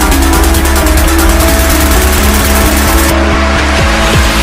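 Loud electronic intro music with a heavy bass and a fast, even beat; the top end drops away about three seconds in.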